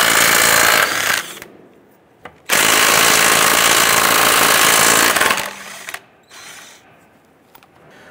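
Cordless impact wrench with a 21 mm socket loosening and spinning off car lug nuts. It runs in a burst of about a second, then after a pause a longer run of about three seconds.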